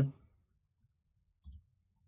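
A single computer mouse click about a second and a half in, after the last word of a short muttered phrase.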